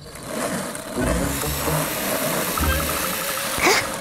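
Small engine of a toy remote-control car buzzing steadily as it drives, louder from about a second in, with a brief swoosh near the end.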